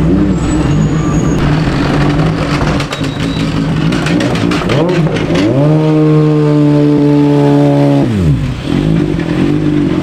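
Open-wheel race car engine revving: about five and a half seconds in its pitch climbs, holds steady at a high note for a couple of seconds, then drops away, with shorter revs and engine rumble around it.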